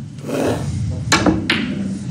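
Two sharp clicks of snooker balls being struck, about a second in and less than half a second apart, over the quiet murmur of the hall.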